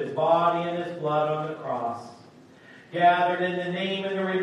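A Lutheran pastor chanting a communion prayer in a man's voice, held on a single reciting tone. There is a short pause about two seconds in before the chant resumes.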